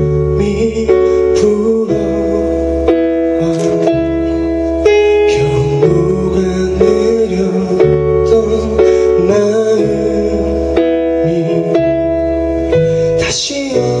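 Live band music: electric keyboard chords over bass guitar, the chords changing about every second, with occasional cymbal strokes.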